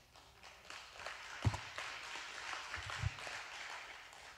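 Faint applause from a congregation, starting about half a second in and fading near the end, with a few soft low thumps.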